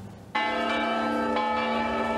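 Church bells ringing. They are struck suddenly about a third of a second in and again about a second later, and each stroke rings on as a full, steady chord.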